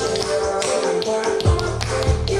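Tap shoes clicking on a hard floor in a run of quick, irregular taps, over a recorded pop song whose bass drops out briefly and comes back about one and a half seconds in.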